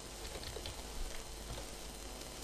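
Computer keyboard keys clicking faintly as a few characters are typed, over a steady low hiss and hum.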